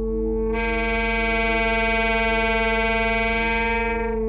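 Alto saxophone and electronic tape music: a bright, loud held note comes in about half a second in and holds steady until just before the end, over a steady low electronic drone.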